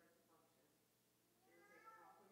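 Near silence with a faint, distant voice speaking off-microphone. It grows a little louder near the end.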